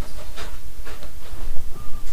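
A steady hiss of noise with a few faint short puffs in it.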